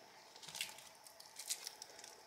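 Faint handling sounds of a titanium-bracelet dive watch being lifted out of its box: a few soft rustles and light clicks, about half a second in and again around a second and a half in.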